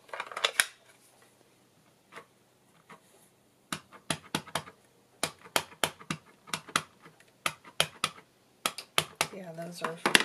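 A quick, uneven run of light, sharp taps and clicks, two or three a second, as a clear acrylic stamp block and cardstock are handled on a craft table. A woman's voice begins near the end.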